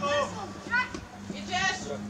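Young footballers shouting on the pitch: three short, high-pitched calls across the field, over a faint steady hum.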